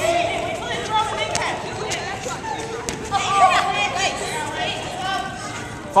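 Players' voices calling out and chattering in a large indoor hall, with a few short sharp knocks.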